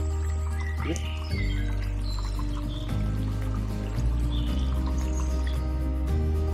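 Background music: held low notes and chords that change every second or so.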